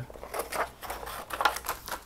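Paper being handled: a sheet of white paper rustling and crackling in short, irregular bursts as it is picked up and slid over a paper pop-up.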